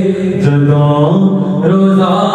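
A man's solo voice singing a naat (devotional recitation) into a microphone, drawing out long held notes; the note drops lower about half a second in and climbs back up after about a second.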